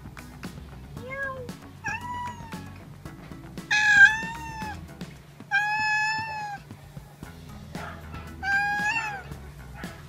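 Domestic cat meowing five times, each meow a separate drawn-out call; the one about four seconds in is the loudest and the next, around six seconds, the longest.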